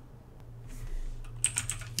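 Typing on a computer keyboard: a few scattered keystrokes, then a quick run of key presses in the second half. A low steady hum runs underneath.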